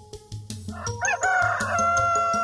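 A rooster crowing once: the call starts about a second in, rises, then holds a long steady note, over a children's song backing with a steady beat.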